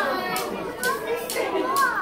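Young children's high voices chattering and calling out together.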